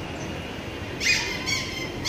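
Steady roadside traffic noise with three short, shrill, pitched sounds: one about a second in, a second half a second later that rings on briefly, and a third at the very end.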